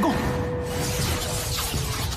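A dense, continuous clattering and jingling of metal blades, like a heap of swords and weapons whirling and clashing together, over background music holding one sustained tone.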